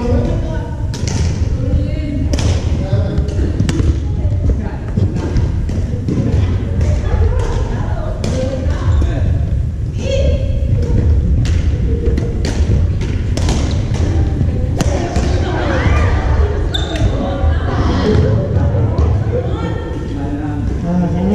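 Badminton rackets hitting shuttlecocks in a large gymnasium: sharp smacks at irregular intervals, several rallies overlapping, with thuds on the wooden court and voices in the echoing hall.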